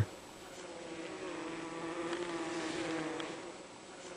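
Carniolan (Carnica) honey bees humming in an opened hive around a sugar-syrup feeder. The steady buzz grows louder through the middle and fades near the end.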